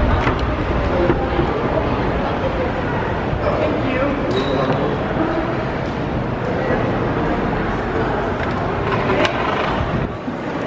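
Indistinct chatter of people nearby over a steady, noisy background din, with a couple of brief clicks, one about four seconds in and one near the end.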